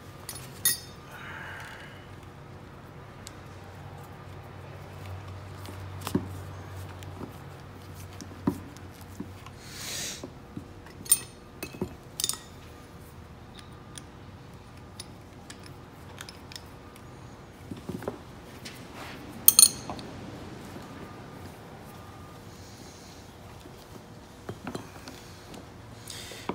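Scattered metal clinks and taps of open-end wrenches against brass air-hose fittings as the fittings are handled and snugged onto the hose, with the loudest, a sharp double clink, about three quarters of the way through.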